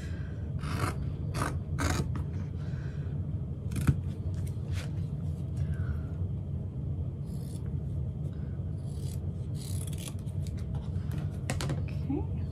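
Scissors snipping through vinyl along a marked cutting line. The cuts come as a string of separate short snips with pauses between them, some in quick clusters.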